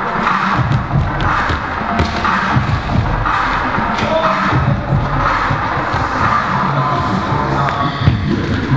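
Audience cheering and shouting over loud music during a live stage dance act.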